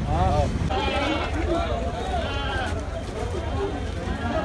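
Goats bleating, with one long wavering bleat about a second in, over the chatter of people around them.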